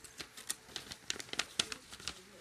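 A yellow paper mailing envelope being handled close to the microphone while stickers are taken out: a string of irregular crinkling and rustling crackles.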